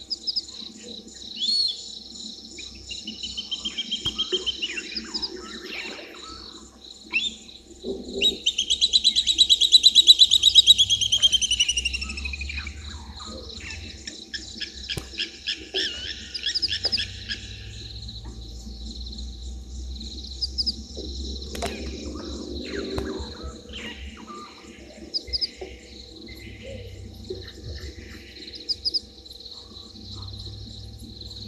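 Birds calling over a steady high insect drone; the loudest call is a rapid trill of many notes that falls in pitch over about four seconds, starting about eight seconds in, with shorter chirps and trills scattered around it.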